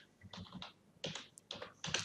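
Computer keyboard being typed on: a few quiet separate keystrokes, spaced irregularly, as a short word is typed.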